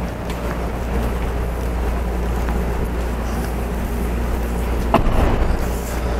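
Steady low hum and rumble with faint even tones above it, broken once about five seconds in by a sharp knock.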